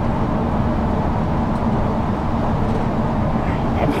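Steady drone of a moving city bus heard from inside the cabin: engine and tyre-on-road noise running without a break.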